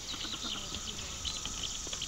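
Small birds chirping: many short, high chirps scattered irregularly over a steady, faint high hiss of outdoor ambience.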